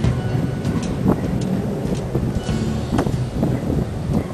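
Homemade vertical-axis wind turbine turning in the wind, its bike chain-ring drive and VW Polo alternator clicking and clattering irregularly over a low wind rumble on the microphone.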